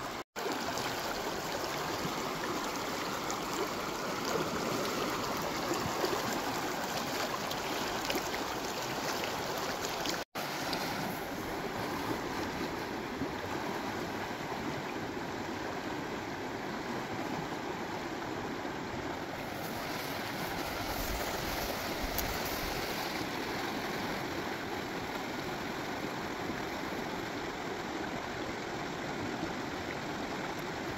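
Fast, shallow river rushing over rocks, a steady wash of running water, cut by two momentary dropouts, one just after the start and one about ten seconds in.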